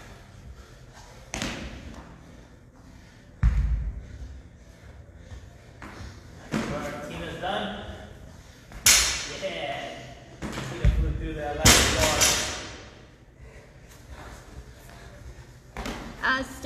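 Kettlebells, a barbell and bodies hitting a rubber gym floor during burpee deadlifts: a run of thuds at uneven intervals, the heaviest and deepest about three and a half seconds in.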